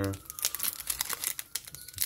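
Foil wrapper of a Pokémon booster pack crinkling in the hands as it is handled and pinched open, a dense run of irregular crackles.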